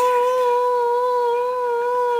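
A voice holding one long, loud note with a slight waver.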